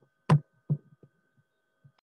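Two short dull knocks about half a second apart, the first the louder, then a couple of faint ones, over a faint steady high hum.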